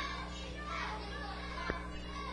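Faint background chatter of a small crowd of spectators in a hall, over a steady low electrical hum.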